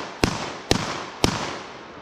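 Benelli M2 semi-automatic shotgun fired three times in quick succession, about half a second apart, each shot followed by a short fading echo.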